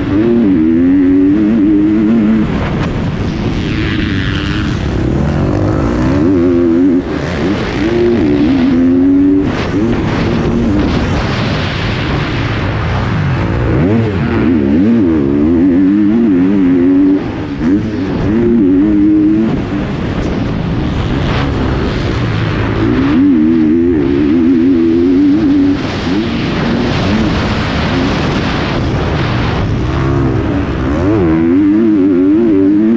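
2021 GasGas 250 dirt bike engine being ridden hard around a motocross track, its revs rising and falling constantly with throttle and gear changes. There are several brief drops in revs along the way.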